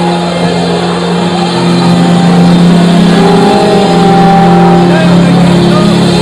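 A congregation praying aloud all at once, many voices overlapping, over the held chords of background music that change about three seconds in.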